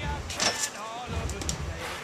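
A person's voice speaking briefly and indistinctly, with a short sharp sound just before half a second in.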